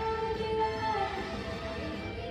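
Children's chorus singing with musical accompaniment, holding one long note through the first half before the melody moves on.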